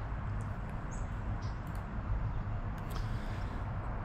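Steady low outdoor background noise, with a brief high chirp about a second in and a few faint ticks.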